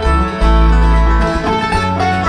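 Live bluegrass band playing an instrumental passage: banjo, mandolin, acoustic guitar and dobro picking over deep upright bass notes.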